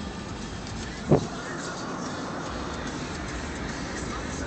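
Steady road and engine noise of a car driving, heard from inside the cabin, with one short loud sound about a second in.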